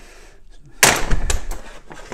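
A hammer strikes the handle of a screwdriver whose tip is held against mineral-insulated copper-clad (pyro) cable on a steel vice, driving the tip into the cable: one sharp, loud metallic blow nearly a second in, followed by a few lighter knocks.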